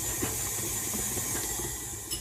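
Food processor motor running steadily, whizzing butter and sugar together in its bowl.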